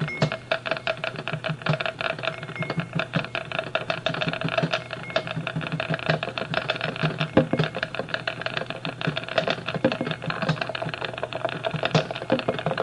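Electronic music built from dense, rapid clicks over steady low sustained tones.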